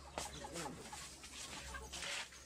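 A few short, faint bird calls in the background, with one quiet spoken word.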